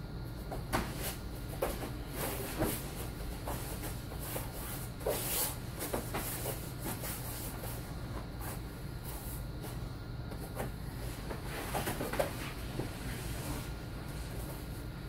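Grappling in jiu-jitsu gis on foam mats: scattered soft thumps and rustles from bodies, feet and gi fabric moving, over a steady low hum.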